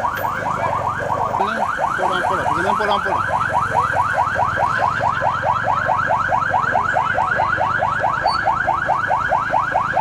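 Electronic vehicle siren on a fast yelp, repeating quick rising sweeps at about five a second, over a low rumble.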